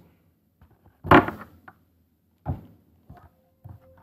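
A handheld digital microscope being seated in the holder of its stand: a single knock about two and a half seconds in, then a few faint clicks near the end.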